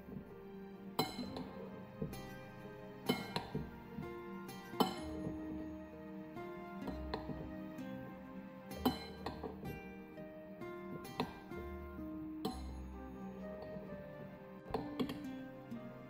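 A spoon and spatula clinking now and then against a glass bowl as a salad is tossed, over steady background music.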